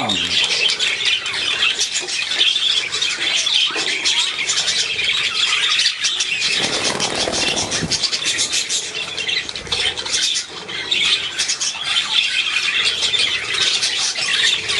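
Many budgerigars chattering and squawking at once in a steady, high-pitched din.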